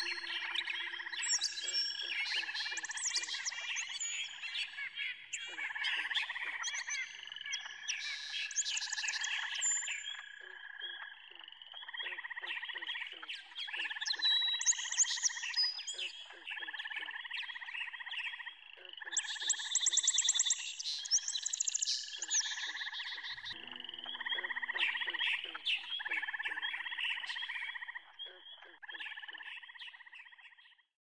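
A chorus of frogs calling in repeated pulsed trills, with birds chirping higher above them at several points. The sound fades out near the end.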